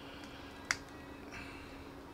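A single sharp plastic click from the parts of an S.H. Figuarts action figure being handled, about two-thirds of a second in, followed by a faint rustle of handling, over a low steady hum.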